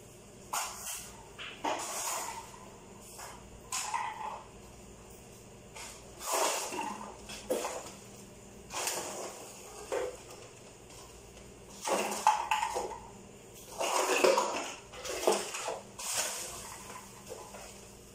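Irregular swishing strokes of a mop pushed back and forth across a hard floor, in short bursts with brief pauses between them.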